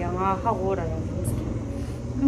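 A woman's voice speaking briefly in the first part, over a steady low background hum.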